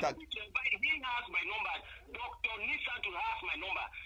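Speech only: a person talking over a telephone line, the voice thin and narrow in pitch range.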